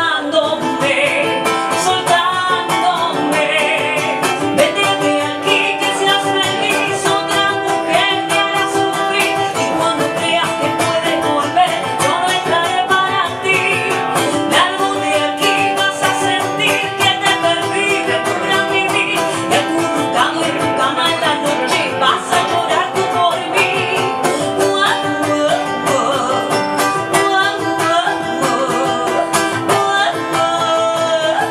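A woman singing live, accompanying herself on an acoustic-electric ukulele, with a sung melody over steady plucked chords throughout.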